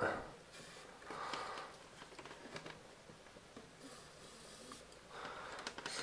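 Faint, brief whir of a small planetary gear motor run at only 2 volts, driving a model bale wrapper's lifting arm down, about a second in. It is followed by faint handling sounds.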